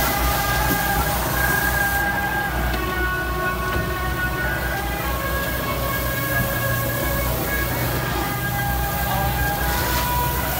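Diesel engine of a skid-steer loader running and working, a steady low rumble that swells and dips, with long held musical notes sounding above it.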